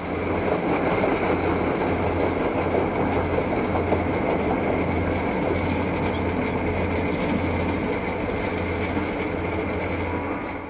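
Passenger train rolling steadily across a steel truss bridge: wheels on rail with a steady low drone underneath.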